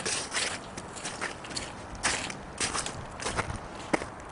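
Footsteps crunching on snow, a short crisp crunch roughly every half second to a second.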